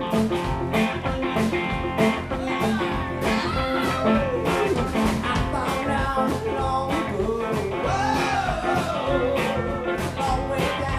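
Live rock band playing: electric guitar, bass guitar, drum kit and pedal steel guitar, with a steady drum beat. A man's lead vocal comes in about halfway through.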